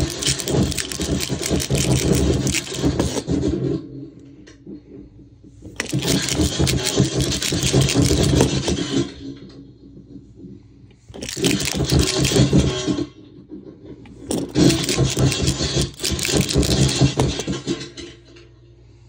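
Shaker box played through a Mantic Hivemind fuzz pedal (a DOD Buzzbox clone), giving harsh crackling noise in four loud bursts of a few seconds each with much quieter gaps between. The crackle is mixed with some of the shaker box's own sound.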